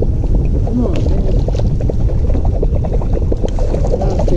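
Steady wind rumble on the microphone and water lapping against the hull of a fishing boat, with a few brief low voices.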